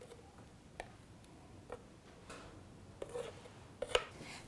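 Faint, scattered light clicks and taps with a soft scrape as thick pâté is emptied from a blender jar into a glass bowl.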